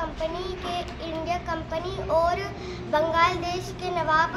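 A young girl speaking in a level, sing-song recitation, reeling off a quiz answer.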